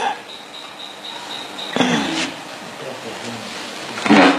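Indistinct talking in a room over a steady hiss, with a thin high steady tone running through the first half.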